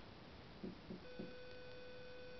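Faint hiss with a few soft low knocks, then a steady faint beep-like tone starts about a second in and holds.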